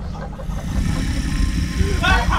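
A deep, steady low rumble from horror-trailer sound design, with a faint high hiss above it.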